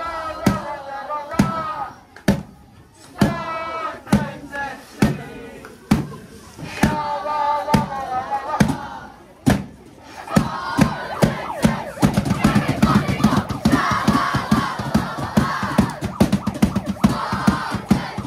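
A large hand-held marching drum with a taped head beaten with sticks, about one beat a second, while a group of young fans chant. About ten seconds in, the beats come much faster and the chanting swells into a loud crowd.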